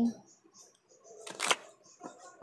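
A deck of tarot cards being handled: a brief rustle of cards that ends in one sharp snap about one and a half seconds in.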